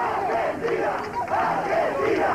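Crowd of protesters shouting, many raised voices overlapping.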